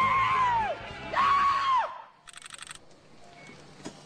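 A man whooping and yelling in celebration, two long drawn-out shouts, the second starting about a second in. About halfway there is a brief rapid high buzz, and then it drops much quieter.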